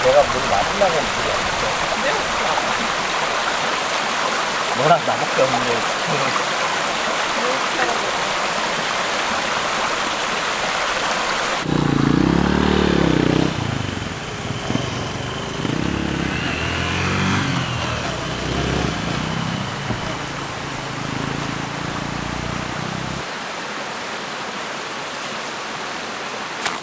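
Creek water running over rocks, a steady rushing hiss. About halfway through, after an abrupt change, a motor vehicle engine runs with its pitch rising and falling for about ten seconds, then fades to a quieter hiss.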